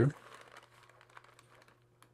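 Faint rustling and small ticks of a folded paper carrier sheet being pushed by hand into the feed slot of a heated laminator, over a steady low hum.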